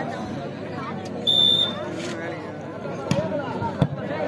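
Referee's whistle blowing one short, steady blast, then two sharp slaps of hands hitting a volleyball, a serve and then its dig, under steady crowd chatter.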